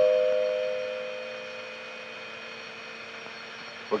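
Two-note door chime ringing: two clear notes struck a moment apart, dying away over a second or two and lingering faintly.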